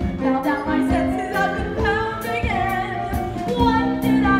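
Female voices singing a musical-theatre song with instrumental accompaniment, the sung notes held and gliding between phrases.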